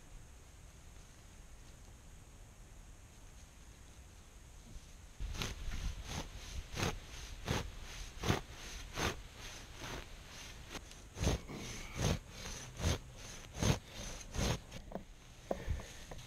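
Lightning-pattern hay knife being worked down through a tightly wound round hay bale: a run of short, sharp strokes through the hay, about one a second, starting about five seconds in.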